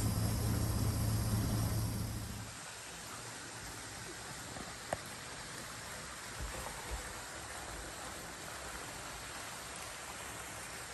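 A steady low motor hum that stops about two and a half seconds in, followed by a steady rush of water running into a plastic water tank, with a couple of soft knocks.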